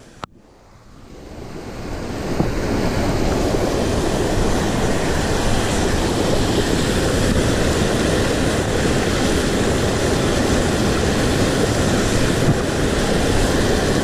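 Whitewater of a mountain river rushing over and around boulders: a steady, dense rushing that fades in over the first two seconds after a brief cut and click at the very start.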